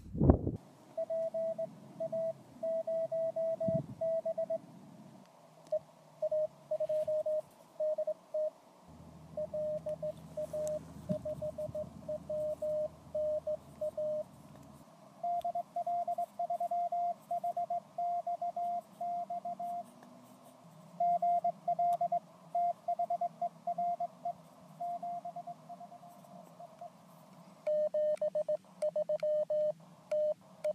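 Morse code (CW) from a Mountain Topper MTR-3B portable HF transceiver during a contact: a single beep tone keyed on and off in dots and dashes over a faint hiss of band noise. Near the end the tone steps slightly lower in pitch.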